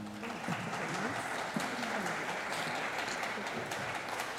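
Audience applause, a dense patter of many hands clapping, with crowd voices mixed in, starting as the dance music stops.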